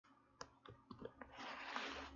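Faint, light clicks on a computer, about five in under a second, followed by a soft hiss that builds just before speech begins.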